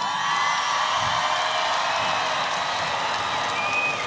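Large stadium crowd cheering and screaming, a steady wash of many voices with high-pitched whoops throughout.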